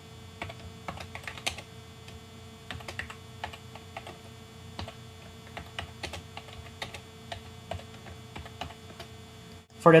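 Computer keyboard typing: irregular runs of keystroke clicks, over a faint steady hum.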